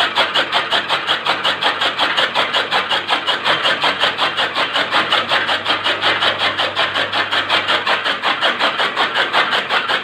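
Toka fodder-cutting machine running and chopping green fodder, its flywheel-mounted blades striking in a fast, even rhythm of several chops a second.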